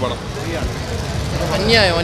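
A man's voice over a steady low outdoor rumble of crowd and traffic noise, with clearer speech near the end.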